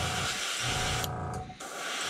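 Gravity-feed airbrush spraying in a steady hiss, which stops briefly about a second in and starts again half a second later. A low steady hum runs underneath.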